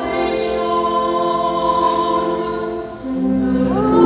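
A choir singing during Mass, with long held notes. The singing dips briefly about three seconds in, then a new phrase begins.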